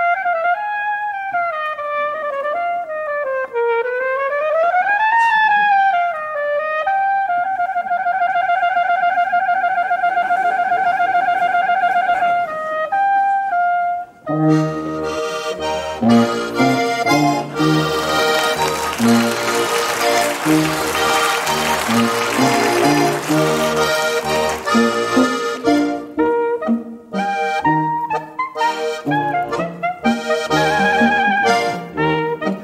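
Live Bavarian folk band music with brass and accordion. A single wind instrument first plays a solo line with a slide up and down in pitch and a long wavering held note. About fourteen seconds in, the full band comes in with a bass line and a loud, dense passage, with a hissing wash of noise over its middle.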